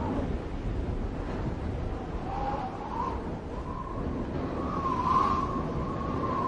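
A low, steady rumbling noise, with a faint wavering tone coming in about two seconds in and growing a little louder near the end.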